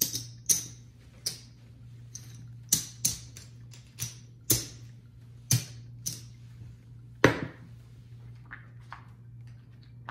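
Casino chips clacking together as stacks are picked up and set down on a felt craps layout: about a dozen sharp clicks at uneven intervals, the loudest about seven seconds in.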